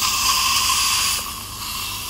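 Dental suction hissing steadily while water is squirted from the dental syringe over a bonded transfer tray to break its water-soluble seal; the hiss thins and drops a little after the middle.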